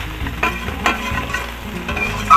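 Small whole fish sizzling as they fry in oil in an iron karahi. A metal spatula scrapes and knocks against the pan about four times as the fish are turned.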